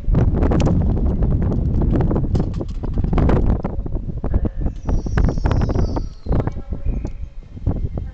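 LNER Azuma (Hitachi 800-series) train pulling out and passing close by, a heavy low rumble with irregular knocks, likely wheels over the rail joints and points. About five seconds in, a brief high whine falls in pitch.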